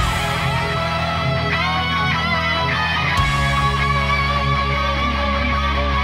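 Heavy metal mix led by a distorted electric guitar playing a lead line with string bends, its tone from the Metal Power 3 preset (Badonk amp model) on the Line 6 Helix, over a backing of bass and drums.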